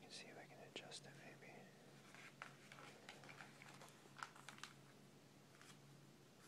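Glossy magazine pages handled and turned by hand: quiet paper rustling with scattered small ticks and crinkles.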